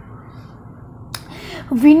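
A single sharp click about halfway through a pause filled with faint room hiss.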